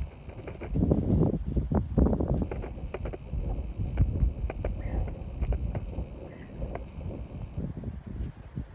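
Wind buffeting the microphone in uneven gusts, a low rumble that swells and drops, with a few faint clicks.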